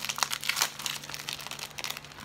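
Clear plastic packaging of a paper ephemera pack rustling and crinkling as hands turn it over and pull at it: a quick, irregular run of crisp crackles.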